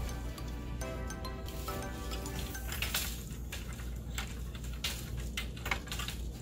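Soft background music of plucked notes, with occasional sharp metal clinks as a jack loom's steel hanger straps and S-hooks are handled against the wooden shaft bars.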